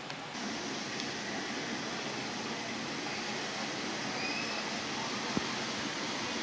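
Steady outdoor ambient hiss at a moderate level, with a few faint short chirps midway and a single click near the end.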